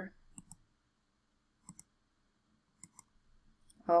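A few computer mouse clicks, mostly in quick pairs spread a second or so apart, as ribbon buttons are clicked to center cells in a spreadsheet.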